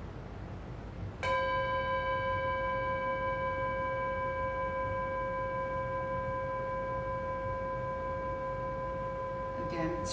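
A bell is struck once about a second in and rings on with several steady overtones, hardly fading.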